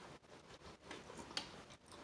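Faint close-up chewing of a lettuce wrap filled with snow crab and shrimp: a few soft crisp clicks and crunches from the lettuce, the clearest about two-thirds of the way in.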